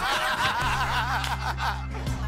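A man snickering and chuckling in high, wavering laughs. Background music with steady low sustained notes comes in about half a second in.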